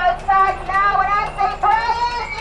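A high-pitched singing voice through a microphone, a run of held notes with short breaks between them.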